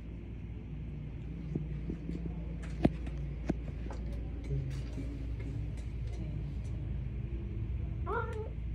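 Steady low rumble of background noise, with a sharp click a little under three seconds in and a smaller one about half a second later.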